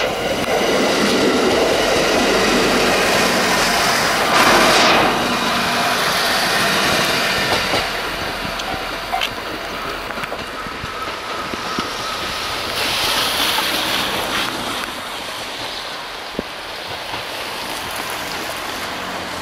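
JR East E491-series 'East i-D' electric track-inspection train running past on the rails, with wheels clattering and a surge of running noise about four seconds in. After about eight seconds the train is heard further off and quieter.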